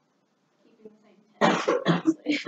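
A person coughs sharply, clearing the throat, about one and a half seconds in after a near-silent pause, and speech begins right after it.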